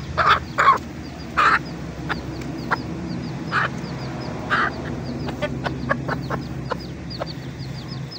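Hen clucking: several loud calls in the first two seconds, two more around three and a half and four and a half seconds in, then a run of quicker short clucks near the end. Chicks peep steadily throughout in high, quick, falling notes.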